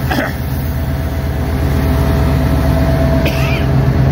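Diesel locomotive engine idling: a steady low rumble with a faint higher tone held over it for most of the time.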